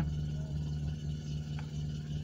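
Steady low electrical hum from a public-address amplifier and mixer, with a faint click about one and a half seconds in.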